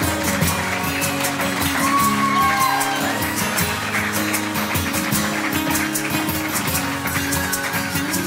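Live acoustic band music with no singing: several acoustic guitars strummed and picked together, hand percussion keeping a steady beat, and some audience voices underneath.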